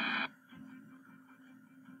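A radio-like recorded audio clip with a voice cuts off abruptly just after the start. A faint steady low hum follows.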